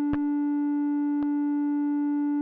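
Korg Mono/Poly analog synthesizer holding one steady, unchanging note, with two brief clicks about a second apart.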